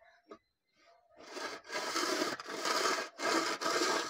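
Long metal straight edge scraped along the face of a freshly laid brick wall, in several long rasping strokes starting about a second in.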